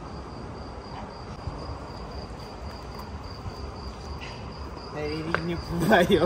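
Outdoor night ambience: a steady high-pitched trill over a low, even background hum. A man starts talking near the end.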